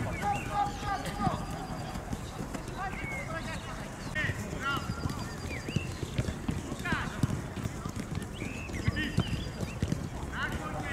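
Footballs being dribbled on artificial turf: many light, irregular knocks of foot-on-ball touches and footsteps, with young players' voices calling now and then.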